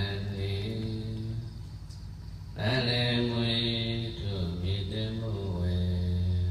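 Buddhist monk chanting into a handheld microphone in a low voice on long held notes, dropping off about a second and a half in and taking up the chant again about a second later.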